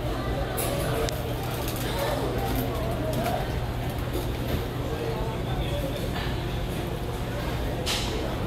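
Steady low hum of an airport terminal interior, with faint background voices. No distinct aircraft sound stands out.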